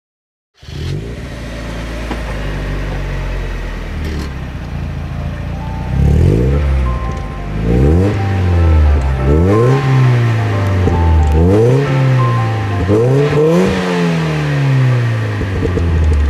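Supercharged 1.8-litre four-cylinder engine of a 1994 Mazda Miata fitted with a Jackson Racing M45 supercharger, heard through its exhaust. It idles steadily, then from about six seconds in is revved about six times, the pitch climbing and falling back with each rev.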